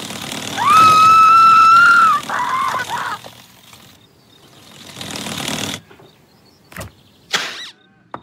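Cartoon sound effects: a long high-pitched squeal lasting about a second and a half, followed by a few short squeaks. Then comes a swelling whoosh and a couple of sharp clicks near the end.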